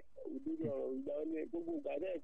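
Speech: a person talking steadily in short, quick phrases.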